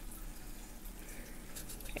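Quiet room tone: a faint, even background hiss with no distinct sound event.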